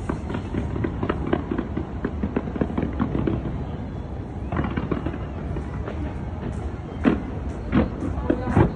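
Aerial fireworks display, shells bursting and crackling in quick succession over a continuous low rumble, with one louder bang about seven seconds in.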